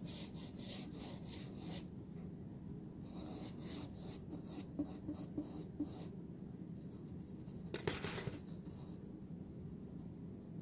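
A paintbrush's bristles being stroked back and forth over grooved miniature clapboard siding, a faint run of short scratchy strokes with a pause a little after halfway and one louder stroke about eight seconds in.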